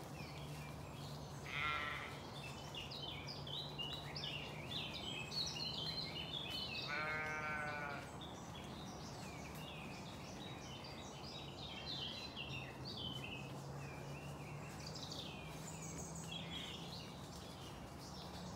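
Woodland birdsong chorus of many small chirps, with a sheep bleating twice: a short bleat about two seconds in and a longer one about seven seconds in.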